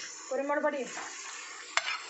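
Whole spices sizzling in hot oil in an aluminium pressure cooker, a steady frying hiss. There is a single sharp click near the end.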